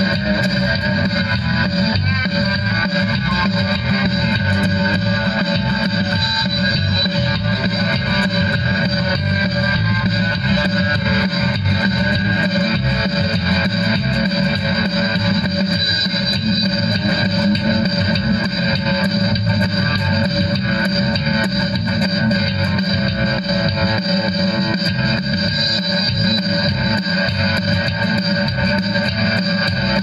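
Multitrack rock guitar recording with an added bass guitar part, played back from a Boss Micro BR BR-80 digital recorder through a Boss guitar amplifier, running steadily throughout.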